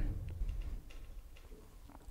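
A few faint clicks over a low background hum, fading toward the end: computer mouse clicks while selecting a device in Android Studio.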